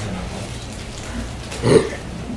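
Meeting-room room tone: a steady low hum under faint rustling. Near the end comes one short murmured voice sound.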